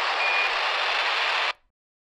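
Squelch burst from a Baofeng handheld ham radio: about a second and a half of static hiss with a short high tone near the start, cut off suddenly. It is the balloon payload's periodic transmission, heard but not decodable for its GPS position.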